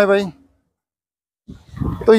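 Murrah buffalo calling: a long, steady call fades out shortly after the start, and another call begins near the end.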